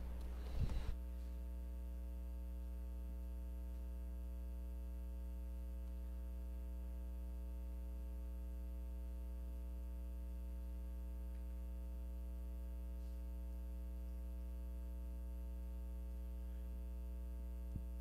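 Steady electrical mains hum in the church sound system's feed, one unchanging buzzing tone with its overtones and no other room sound. There is a brief rustle less than a second in.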